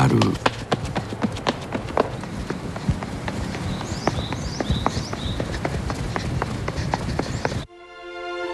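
Running footsteps on a paved uphill slope: quick, sharp footfalls a few to the second over steady outdoor background noise. Near the end they cut off abruptly, replaced by steady held music tones.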